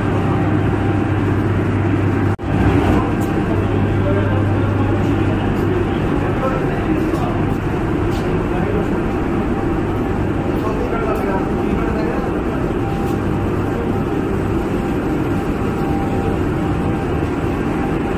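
Loud, steady machinery drone in a hydroelectric plant's underground powerhouse, with a strong low hum for the first several seconds. The sound cuts out for an instant about two seconds in.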